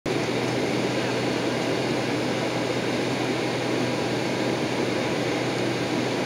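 Steady airliner cabin noise during taxi: the air-conditioning rush and the jet engines at idle, with a constant low hum underneath and no changes.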